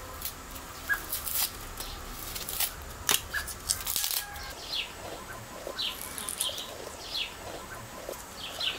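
Small knife paring the skin off a potato by hand: a run of short, sharp cuts, then quicker scraping strokes from about halfway through.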